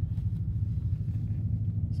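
Steady low rumble of a car driving, heard from inside its cabin.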